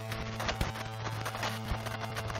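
Improvised ambient electric-guitar soundscape: layered, looped guitar tones held over a steady low drone, with irregular short knocking clicks over the top.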